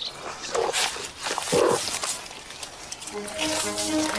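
A young honey badger walking out through a gate, making two short grunts about half a second and a second and a half in. Background music with short steady notes starts near the end.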